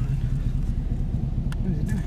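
Car engine idling steadily, heard from inside the cabin as a low, even rumble.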